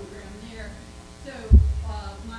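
A voice heard through a microphone and loudspeakers over a steady low hum. About one and a half seconds in, a single loud, deep thump on the microphone cuts in.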